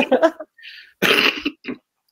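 A man's laughter trails off, then he gives one short cough about a second in.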